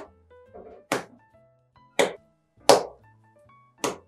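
Sticky cocoa bread dough thrown down onto a wooden worktable during kneading: four thuds, about a second apart. Background music plays under them.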